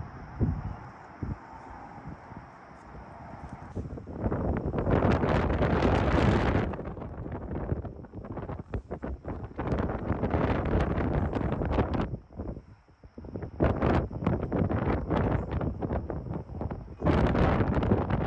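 Wind buffeting the microphone on an exposed ridge, soft at first, then in strong gusts from about four seconds in, with a brief lull about twelve seconds in.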